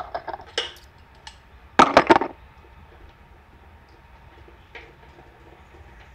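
Clicks and clinks of cable connectors and parts being handled under a lifted motorcycle fuel tank: a few light clicks at first, then a loud cluster of rattling clicks about two seconds in.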